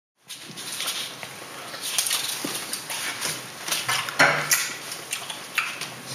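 Scattered light clinks and taps of tableware and glass on a table, with a sharper knock about four seconds in.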